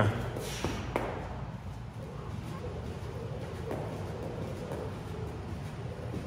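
Low, steady room noise in a large hall, with a few faint, scattered knocks.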